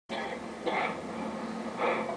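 A person's voice in three short bursts, with no words made out, over a steady low hum.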